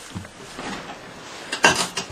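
Handling noise around the ATV's controls: scattered light clicks and knocks, then a short, louder rustling clatter near the end. The engine is not running.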